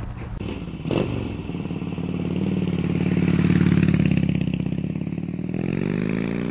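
2010 Harley-Davidson Road King's 96-cubic-inch air-cooled V-twin running at idle, with a short knock about a second in. It swells louder in the middle and rises in pitch near the end as it is revved.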